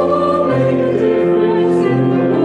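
A hymn sung by a group of voices in slow, held notes.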